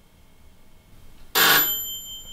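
A doorbell rings once, suddenly and loudly, about a second and a half in, its high ringing tone lingering as it fades.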